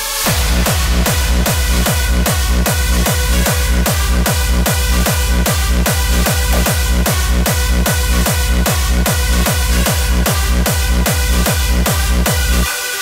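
Hardstyle dance music: a hard kick drum about two and a half beats a second, each hit dropping in pitch, under sustained synth chords, with the beat coming in right at the start.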